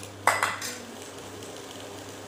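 A single sharp clink of kitchenware against a cooking pan about a quarter second in, ringing briefly, then only a faint steady hum.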